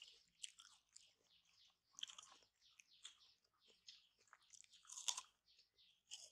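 Baby macaque chewing and biting on a piece of peeled banana: faint, irregular chewing clicks, loudest about five seconds in.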